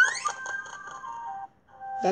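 Music and sound effect from an animated children's story app: a quick rising glide at the start, then a few held musical notes that cut off about one and a half seconds in.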